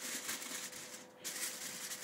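Aluminium foil crinkling and rustling as it is pressed down over the top of a stainless brew pot, over a faint steady hum.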